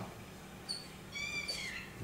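Whiteboard marker squeaking on the board while a letter is written: a brief high chirp a bit under a second in, then a longer, slightly wavering high squeak of about half a second.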